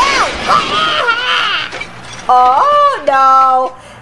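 High-pitched voices crying out in alarm, then, about two seconds in, a voice singing a short phrase of a few held notes.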